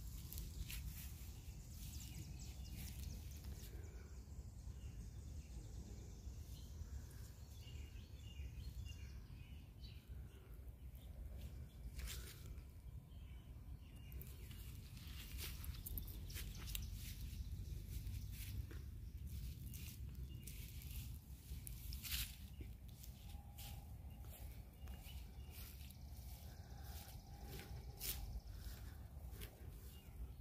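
Outdoor ambience while walking: footsteps on grass and pavement with occasional sharp clicks, over a low steady rumble on the phone microphone. Faint bird chirps come and go.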